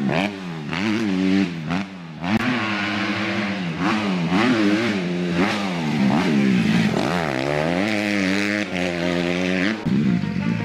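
Dirt bike engine revving up and dropping back over and over, its pitch climbing and falling several times as the rider accelerates and lets off.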